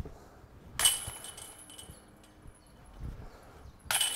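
Two metallic jangles, about a second in and again near the end, each ringing on briefly: discs striking the chains of a disc golf basket.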